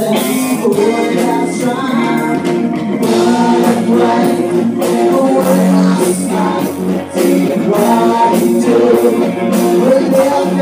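Rock band playing live on amplified stage sound: electric bass, guitar and a drum kit keeping a steady beat, with a man singing into the microphone.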